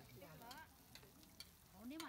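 Faint sizzling of coconut palm weevil larvae (đuông dừa) cooking in a metal hotpot pan over a tabletop burner, with a few light clicks of chopsticks against the pan.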